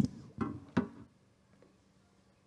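A sharp click and two short bumps of handling noise within the first second, as a handheld microphone is put down.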